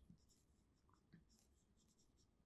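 Very faint scratching of a marker pen writing a word on a whiteboard, in short strokes.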